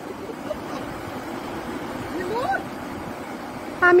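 A steady low rushing background with no distinct events, and a short voiced sound partway through. Near the end a person exclaims "Ah".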